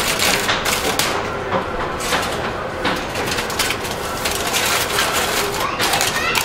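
Aluminium foil crinkling and rustling as it is laid over a roasting pan and pressed down around it, a dense run of crackles and small clicks.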